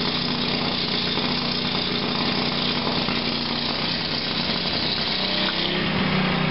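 A small engine running steadily at a constant speed, with a slight change in its tone near the end.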